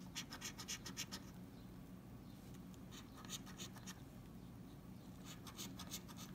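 A coin scratching the latex coating off a lottery scratch-off ticket, faint quick short strokes. The strokes come in three spells: a fast run in the first second, another in the middle and a third near the end, with brief pauses between.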